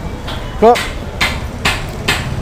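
Repeated sharp knocks like hammer or chopping blows, about two a second, starting about a second in.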